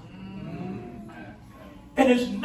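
A person's voice holding one faint, drawn-out wordless sound, its pitch rising and then falling, for about a second.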